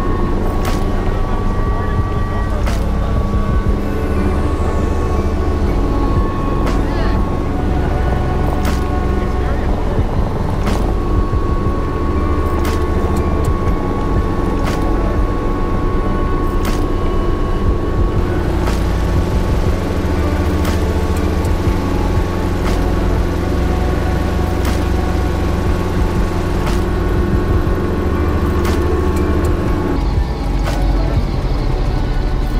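Small helicopter heard from inside the cockpit on approach and landing: steady rotor and engine noise with a steady high whine, and scattered sharp clicks every second or two.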